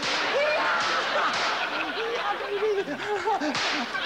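Theatre audience laughing, a dense sustained wash of laughter with voices in it.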